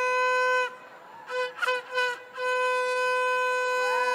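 A shofar blown with one steady, held note that stops under a second in, followed by a few short, broken blasts and then a second long, steady note at the same pitch.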